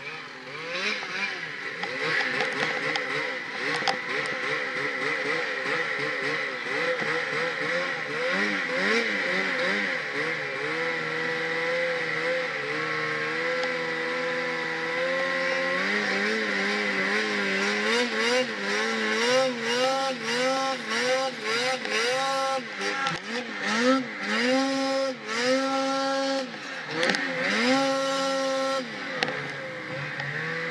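Snowmobile engine pulling through deep powder, its pitch rising and falling with the throttle. In the first half the revs swing up and down, with longer held stretches. From about halfway on come repeated quick rev-ups and drops.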